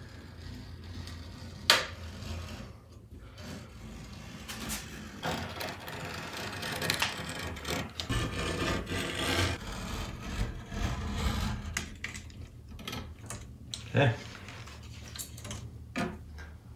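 Utility knife blade cutting the excess fiberglass window screen mesh along the frame's spline groove, a scratchy rasping heaviest through the middle of the stretch. A sharp click shortly after the start.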